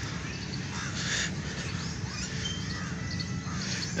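Outdoor park ambience: birds calling in short, scattered calls over a steady low background hum.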